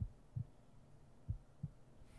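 Slow heartbeat: two low double thumps (lub-dub), one at the start and one just past the middle.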